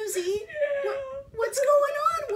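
High-pitched pretend whimpering and sobbing in a puppet's voice, a few drawn-out wavering cries, performed for a puppet that is acting upset.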